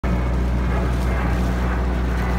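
Outboard motor of a boat running at a steady speed, a low, even drone.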